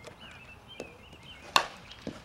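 A single sharp crack of a bat hitting a softball about one and a half seconds in, with a much fainter knock a little before.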